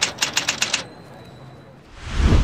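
Typewriter sound effect: a quick run of about eight key strikes in the first second, then only a low background.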